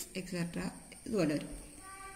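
A person's voice speaking in short bursts, with one short call that falls steeply in pitch about a second in.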